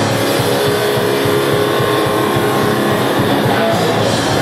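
A metal band playing live and loud: electric guitars over a drum kit, without a break.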